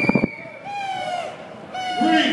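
Protest whistles in a street crowd. One long, steady, high whistle note fills about the first second, with shouts and whoops from the crowd over and after it.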